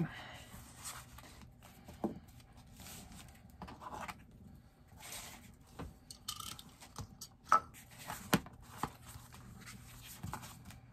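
Scissors trimming paper, with paper and card rustling and scraping as the journal is handled on a cutting mat, and a few sharp light knocks.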